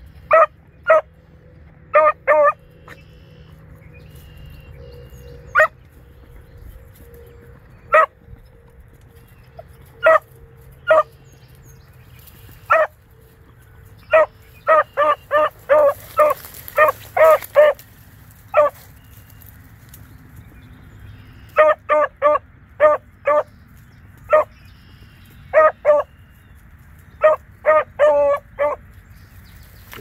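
Beagle barking on a scent trail: short, sharp barks, scattered singly at first, then coming in quick runs in the second half.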